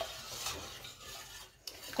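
Wire whisk stirring a flour-and-chicken-stock white sauce in a stainless steel saucepan: a faint, soft scraping swish that drops away briefly about a second and a half in.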